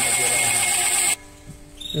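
A steady machine-like noise with a high, steady whine, which cuts off suddenly about a second in, leaving a quieter gap.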